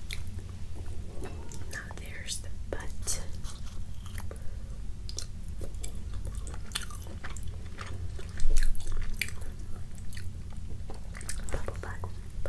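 Close-miked ASMR eating sounds: fingers tearing the skin and meat of a rotisserie chicken, with chewing, heard as many short clicks. A louder stretch comes about eight and a half seconds in, over a steady low hum.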